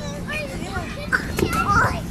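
Young children's voices calling out and chattering as they play together.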